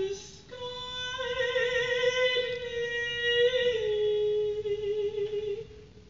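A woman singing long, sustained notes with vibrato: a held note that steps down to a lower one about four seconds in, then fades.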